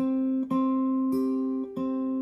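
Acoustic guitar played fingerstyle: about four plucked notes, roughly half a second apart, each left ringing into the next.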